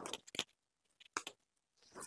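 Saree fabric rustling as it is lifted and shaken out by hand, in short crinkly bursts: a cluster at the start and another a little after a second in.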